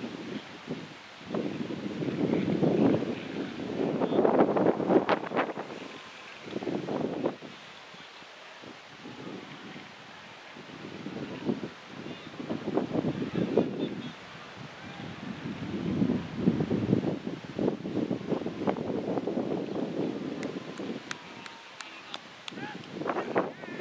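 Wind buffeting the microphone in irregular gusts, with indistinct voices in the background and a few light clicks near the end.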